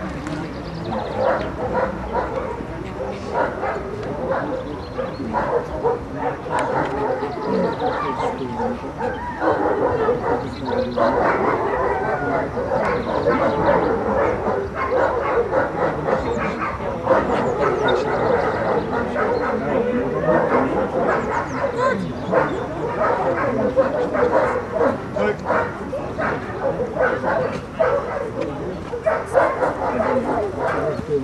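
Dog barking over and over in quick succession, with little pause.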